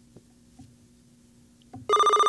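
Quiz-show buzzer: a loud electronic beep near the end, as a contestant buzzes in to answer. Before it, near quiet with a faint steady low hum.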